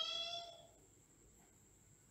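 A single short high-pitched cry at a steady pitch, lasting about a second at the very start.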